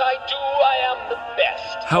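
Disney Jack Skellington pumpkin string lights singing a song through their built-in sound chip, a thin sung melody.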